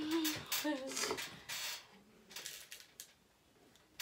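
Brief wordless vocal sounds from a person, short bending hums or laugh-like noises with a few breathy bursts in the first couple of seconds, then quiet.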